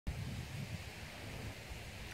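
Wind buffeting the microphone: an uneven low rumble with a faint hiss over it.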